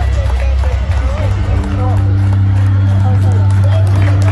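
Several voices calling out over one another as runners pass, with a steady low hum that sets in about a second and a half in and holds.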